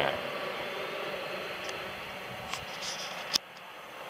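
Steady, even rumble-hiss of a vehicle running along the railroad track by the river, slowly fading. It ends with a sharp click about three seconds in, after which the sound is quieter.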